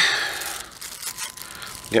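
Small clear plastic bag rustling and crinkling faintly as fingers work it open.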